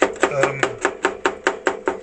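Two metal spatulas chopping rapidly on the steel plate of a rolled-ice-cream machine, about six or seven sharp clacks a second, working mix-ins into the cream on the cold plate.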